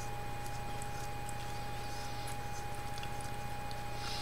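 Faint steady electrical hum with a thin, steady high whine, and a few faint small ticks as a stubby antenna is twisted onto a handheld radio.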